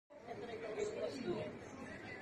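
Indistinct chatter of people talking at a distance, a low murmur of voices with no clear words.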